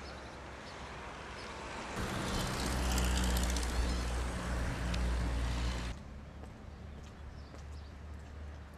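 Road traffic outdoors: a motor vehicle's engine hum and tyre noise swell as it passes close by, loudest between about two and six seconds, then cut off suddenly to quieter open-air background.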